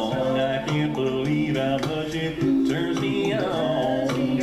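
A male a cappella group singing a slow country song in close harmony, with a deep bass voice carrying the low line beneath the lead.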